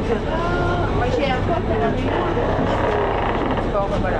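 Several passengers talking at once, over the steady low hum of the berthed ferry's engines idling.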